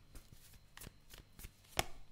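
Tarot cards being handled off a hand-held deck and laid on the table: a string of light card clicks, the sharpest a little before the end.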